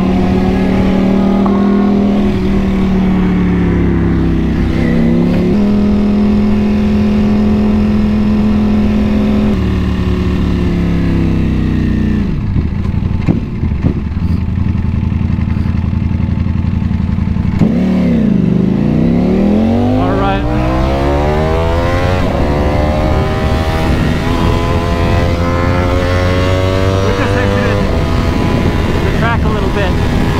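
Ducati Panigale V4's V4 engine heard onboard. It runs steadily at low speed, then drops to a low, slow run around the middle. From about two-thirds in it is revved hard, with its pitch climbing in repeated sweeps as the bike accelerates and shifts up.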